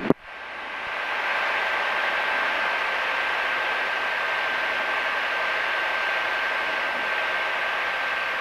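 Steady engine and cabin noise of a single-engine light aircraft heard through the headset intercom as it rolls along the runway, with a thin steady whine in it. The noise rises over about the first second, then holds steady.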